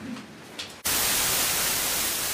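Loud, steady white-noise hiss switched on suddenly less than a second in: sidebar masking noise played while the attorneys confer at the bench, so the bench conference can't be overheard.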